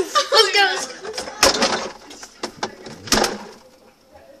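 Children's laughing voices, then two sharp knocks as the refrigerator door is pushed shut on the camera inside. After the knocks the sound goes dull and quiet.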